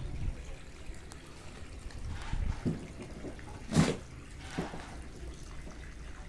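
Wet, soap-covered carpet being scrubbed and handled on wet concrete: irregular wet brushing and splashing sounds, with a sharp wet slap about four seconds in.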